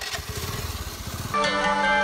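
A motorcycle engine running with an even low pulse, then cut off about a second and a half in by background music with a folk-style melody.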